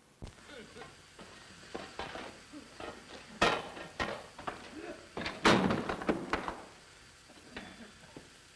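Banging on a heavy wooden door: a run of knocks with two much louder blows about three and a half and five and a half seconds in, and muffled shouting between them.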